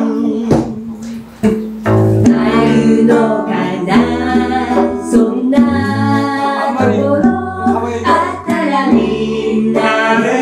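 Small acoustic band playing a song live with singing. After a held sung note and a brief drop about a second in, the band comes in together around two seconds in, deep bass notes under the voices.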